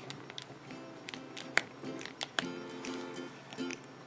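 Soft background music with held notes, under a few small sharp clicks from a plastic action figure's joints and parts being handled and posed.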